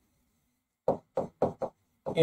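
Marker knocking against a writing board as words are written by hand: four quick knocks, about a quarter second apart, in the second half.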